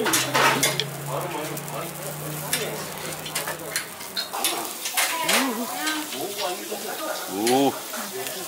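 Beef sizzling over a charcoal grill, with metal chopsticks clicking against a bowl as the meat is mixed through a seasoned green-onion salad.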